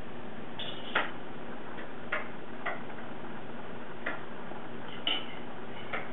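About five light, irregularly spaced clicks over a steady background hiss.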